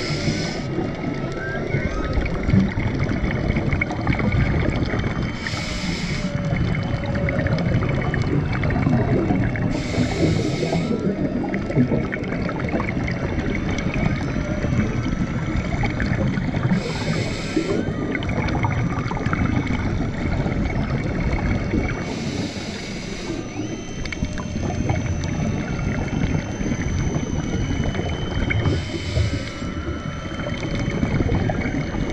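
Underwater sound of scuba breathing through a regulator: a hissing burst of exhaled bubbles about every five to six seconds, over a continuous crackle from the reef. Faint humpback whale song wavers in the background.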